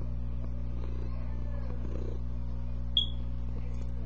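A domestic cat purring close to the microphone, with one short high clink about three seconds in.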